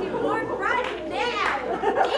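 A woman's voice speaking in a high, swooping pitch.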